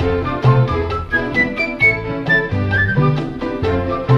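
Cuban charanga orchestra playing a guajira: violins and flute carry the melody over held bass notes and an even percussion beat.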